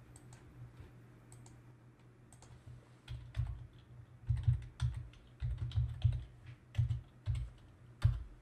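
Typing on a computer keyboard: a few faint taps, then a quick run of keystrokes from about three seconds in, over a faint steady hum.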